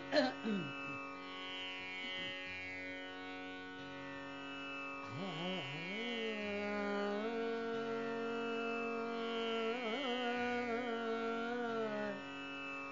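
Tanpura drone with a cough near the start; about five seconds in, a woman's voice begins singing a Hindustani classical bandish, gliding up and then holding long notes, with quick ornaments near the end.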